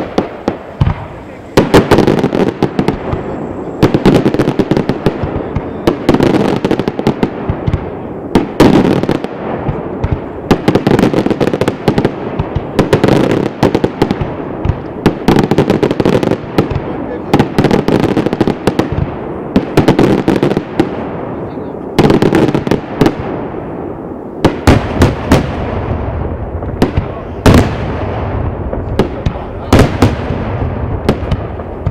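Daytime fireworks display: a continuous barrage of aerial shell bursts and firecracker reports, several bangs a second. It begins about a second and a half in, after a quieter moment, and eases briefly about three-quarters of the way through.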